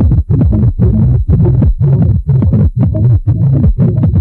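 Loud techno with a heavy, pulsing bass and a regular beat about twice a second.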